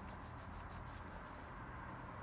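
Faint rubbing of a suede applicator wiped over glossy plastic trim while ceramic coating is spread on, a quick run of strokes in the first second.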